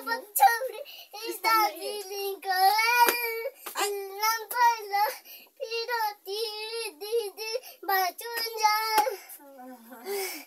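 A young girl singing a song in a high voice, in short melodic phrases with brief pauses between them.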